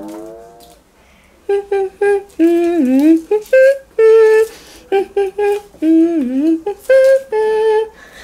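A voice singing a tune in wordless syllables, a string of short clipped notes with a few longer notes that dip and wobble, the kind of one-line song snippet given in a name-that-tune quiz. The singing starts about a second and a half in.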